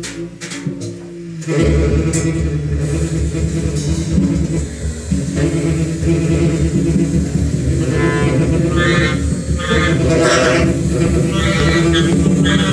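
Small jazz group of saxophone, clarinet, double bass and drums playing experimental music live. A low sustained drone comes in about a second and a half in, with higher notes recurring from about eight seconds.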